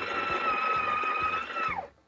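Breville Barista Touch Impress's built-in grinder running a short top-up dose into the portafilter after a low-tamp reading: a steady whine over a grinding hiss. It winds down with a falling pitch and stops near the end.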